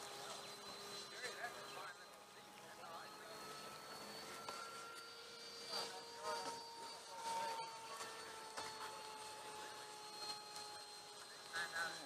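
Hobby King Sky Sword RC model jet's electric ducted fan whining in flight. It is a faint, steady whine of several tones that drift slightly up in pitch around the middle and then ease back down as the plane moves about the sky.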